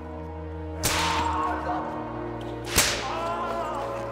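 Two lashes of a scourging whip, about two seconds apart, each followed by a man's pained cry, over held music chords.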